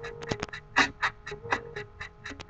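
Instrumental backing music with a beat of sharp percussion hits, several a second, over a held low synth-like tone.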